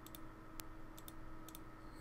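Faint computer mouse clicks, several short scattered clicks while editing in a drawing program, over a low steady electrical hum.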